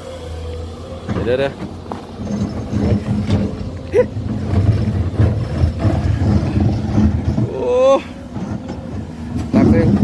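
SANY SY205C excavator's diesel engine working under load as the bucket digs into hard weathered rock, with irregular scraping and clattering of stone against the steel bucket.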